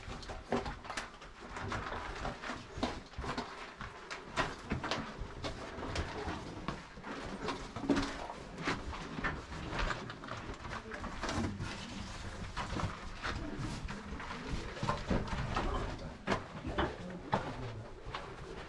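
Footsteps and scuffing on loose rock in a narrow stone tunnel: irregular steps, scrapes and knocks, several a second, as hikers pick their way through.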